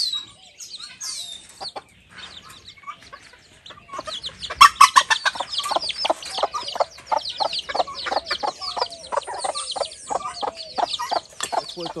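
A brood of chicks peeping, with a hen clucking among them. The calls are sparse at first, then from about four seconds in the chicks keep up a dense stream of short, falling, high peeps, several a second.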